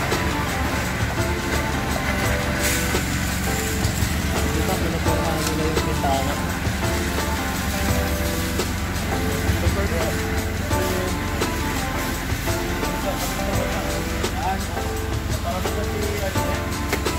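Background music with steady held notes and a voice in it, running without pause.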